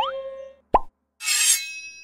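Cartoon-style logo sound effects: a quick rising whistle, a short falling plop just under a second in, then a high sparkling shimmer with a ringing chime that fades out.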